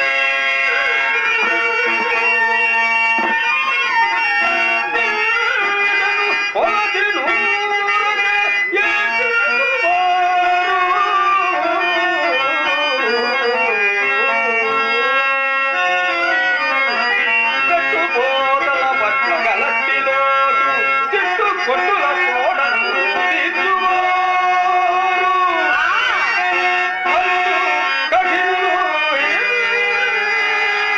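A male stage actor singing a Telugu padyam (drama verse) at length in a drawn-out, ornamented melodic style, over a harmonium that holds sustained notes beneath the voice.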